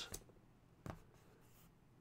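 Near silence: quiet room tone, broken by one short click about a second in.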